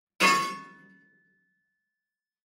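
A single metallic clang, used as a transition sound effect for a chapter title card. It is struck once and dies away within about a second, leaving a thin high ringing tone that fades out.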